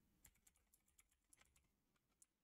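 Very faint computer keyboard typing: a scattering of soft, irregular keystroke clicks.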